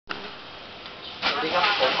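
A man's voice speaking Thai, a polite greeting, starting about a second in over a steady background hiss.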